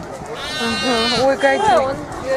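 A lamb bleating: one long call starting about a third of a second in and lasting about a second.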